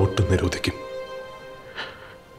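Film trailer soundtrack: a spoken line of dialogue over held music notes, the voice stopping under a second in while the music carries on.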